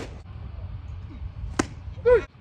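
A sharp click right at the start, then one sharp crack about one and a half seconds in as the pitched baseball reaches home plate, over a low steady outdoor rumble.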